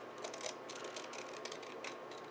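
Scissors cutting through a sheet of paper: several faint, irregularly spaced snips.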